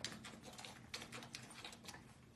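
Faint, irregular small clicks and taps, several a second, from beagle puppies moving about in the whelping box.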